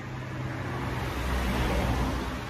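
A road vehicle passing by: a rushing noise with a low rumble that swells to its loudest about one and a half seconds in.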